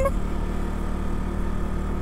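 Motorcycle engine running at a steady cruise while riding, heard from the rider's seat, with an even rush of wind and road noise.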